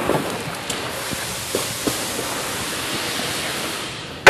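Steady even hiss with a few faint light knocks about a second and two seconds in.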